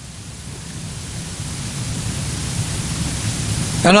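Steady recording hiss with a low rumble, swelling gradually louder through a pause in speech: the recorder's automatic gain turning up the noise floor. A man's voice cuts in near the end.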